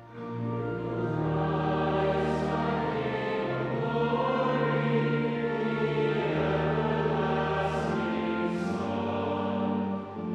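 A group of voices singing a hymn together over sustained low accompaniment. The sound dips briefly at the start and again at the end, between phrases.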